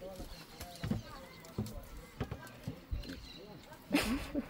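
Quiet background chatter with a few scattered light knocks, about five over four seconds.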